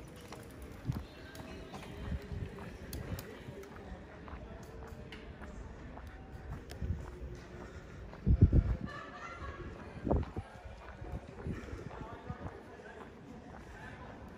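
Street ambience with faint voices of passers-by and a few low thuds on the microphone, the loudest a little past the middle.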